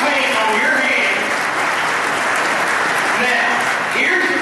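Audience applauding steadily in a large room, with voices talking over the clapping.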